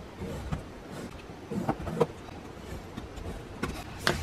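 A pen drawing short lines along a steel ruler on card over a cutting mat, with a few soft taps and knocks as the ruler and pen are handled and set down, the clearest about two seconds in.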